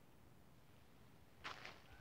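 Near silence: faint background room tone, with a brief faint rustle about one and a half seconds in.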